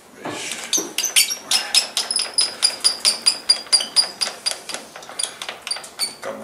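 Nardini engine lathe's carriage being cranked along the bed by its handwheel: a steady run of sharp metallic clicks, about three or four a second, each with a short high ring.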